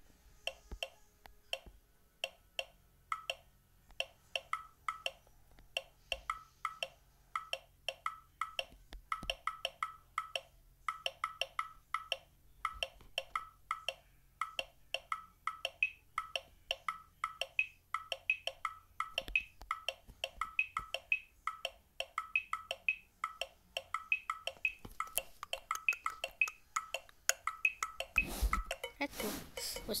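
Chrome Music Lab's Rhythm step sequencer playing a looped beat of short, clicky synthesized percussion hits at a steady tempo. About halfway through, a higher-pitched hit joins the pattern. Near the end it switches to a louder, denser pattern with deeper drum hits.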